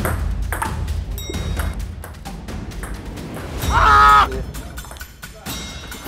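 Table tennis rally: a run of sharp clicks as the ball is struck by the bats and bounces on the table, over background music with a low bass line. A voice calls out briefly about four seconds in.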